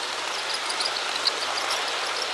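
HO scale model trains running on the layout: a steady rushing whir of wheels and motors on the track, with scattered small ticks and a faint low hum underneath.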